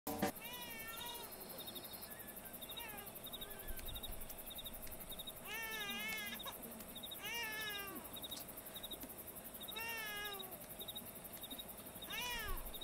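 A baby crying in several separate wavering wails, each rising and falling in pitch, the longest and loudest about six seconds in.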